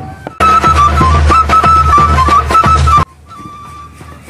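A short burst of music: a high melody line over a low bass, starting about half a second in and cutting off suddenly about three seconds in, followed by a much quieter stretch.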